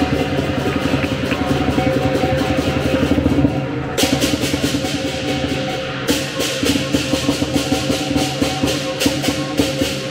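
Lion dance drum, cymbals and gong playing fast drumming over a held ringing tone. About four seconds in, crashing cymbals join in; they break off briefly, then keep a steady beat of about two strikes a second.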